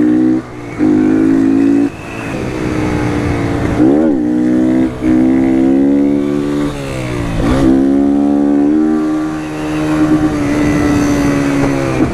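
Motorcycle engine revving hard under throttle, the note cut off and dropping sharply several times and climbing again each time as the throttle is chopped and reopened, with one quick rev spike about four seconds in; the rider is lifting the bike into a wheelie.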